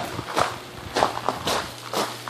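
Footsteps walking along a gravel aisle, about two steps a second.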